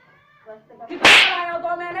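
A sharp crack, like a slap, about a second in, followed at once by a child's loud drawn-out cry of about a second held on one pitch.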